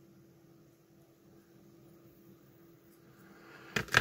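Near silence: faint room tone with a steady low hum, and a short click near the end.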